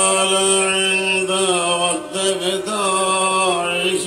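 A man's voice chanting a devotional recitation in long, held melodic lines, with a short breath pause about two seconds in. A steady low hum runs underneath.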